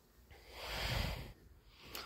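A person breathing out close to the microphone: one breathy exhale that swells and fades over about a second.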